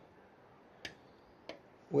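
Two short sharp clicks about two-thirds of a second apart over near silence, with a faint high tone between them: a Morse key pressed and released, keying the Pixie 40 QRP CW transmitter.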